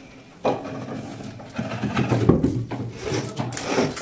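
A large sheet of board scraping and rubbing as it is handled and moved. The noise comes in irregular strokes and is louder and denser in the second half.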